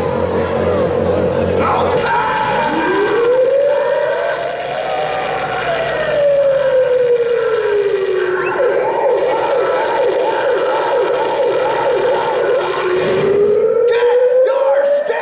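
Siren-like wail from a recorded intro played over the arena PA. It rises for about three seconds, sinks slowly, then climbs again near the end, over a pulsing electronic backing.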